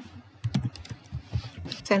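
Computer keyboard typing: an irregular run of keystrokes.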